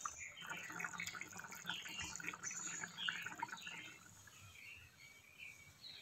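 Fish curry boiling in a pan, with faint scattered bubbling pops that die away after about four seconds.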